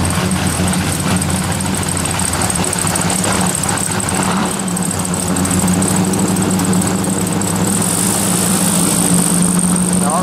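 Car engines running steadily at low revs as vintage cars drive slowly past, with a classic Volkswagen Beetle going by partway through.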